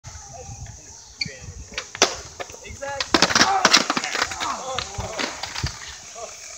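Skateboard rolling on concrete, then a sharp knock about two seconds in and a burst of loud clattering impacts a second later as the board and rider slam onto a concrete skatepark ledge in a failed trick.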